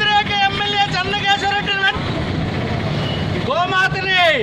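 Protesters shouting slogans in a loud, raised voice: a quick run of syllables held at one pitch for about two seconds, then a pause filled with steady traffic noise, then another shout near the end.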